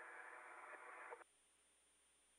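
Radio-channel static hiss, limited to the same narrow band as the voice channel. It cuts off suddenly a little over a second in, leaving near silence.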